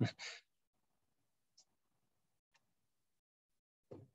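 A man's breathy laugh trailing off in the first half second, then near silence broken by two faint clicks, and a brief voice sound just before the end.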